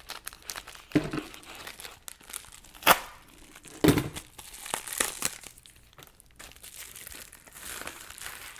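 Scissors cutting open a paper mailer, then the paper packaging crinkling and rustling as it is unwrapped, with a few sharper snips or clicks about one, three and four seconds in.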